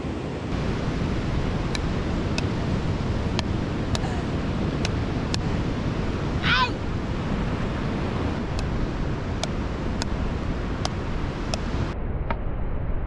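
Beach paddleball rally: paddles hitting the ball with sharp clicks, a little under a second apart, in two runs with a break near the middle, over steady surf and wind noise on the microphone. A short shout comes in the break between the runs.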